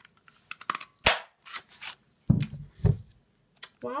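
Hand-held Stampin' Up! Snow Flurry craft punch snapping down through paper: light clicks, then one sharp loud snap about a second in, followed by brief scraping and two dull knocks as the punch is handled.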